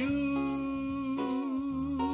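A man's singing voice holding one long, steady note on the word "you", over a quiet instrumental backing whose chords change beneath it.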